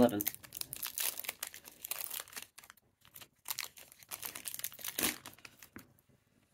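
Foil trading-card booster pack (Yu-Gi-Oh! Lightning Overdrive) crinkling and crackling as it is handled and torn open, with a louder burst about five seconds in.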